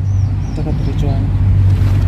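A steady low engine hum runs throughout, with faint voices in the background about halfway through.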